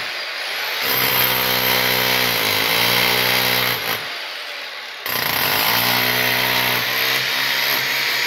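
Corded electric demolition hammer chiselling up a tiled floor: a steady motor drone over rapid hammering, the pitch dipping briefly under load. It stops about four seconds in and starts again a second later.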